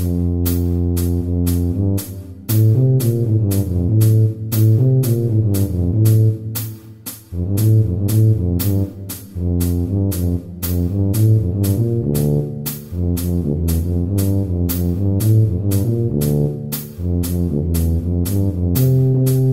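Tuba playing a melody of short repeated notes and triplet figures over a steady percussion click of about two beats a second.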